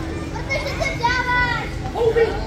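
Young children calling out in a crowd of kids, with one child's high, drawn-out call about a second in.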